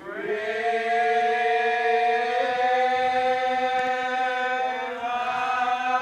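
Slow hymn singing in long, drawn-out held notes, the voice sliding up into the first note and moving to a new note about five seconds in.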